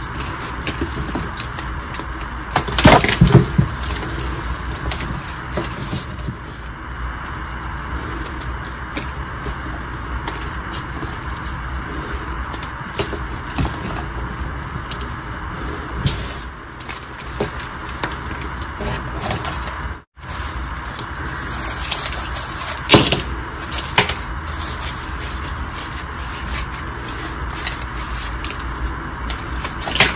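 Gym chalk slabs crushed and crumbled between the hands: a steady gritty crumbling with sharper cracks and crunches as pieces snap off, loudest about three seconds in and again around twenty-three seconds.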